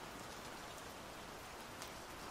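Faint, steady rain ambience: an even patter of rainfall with no separate strikes, laid under the narration as a background bed.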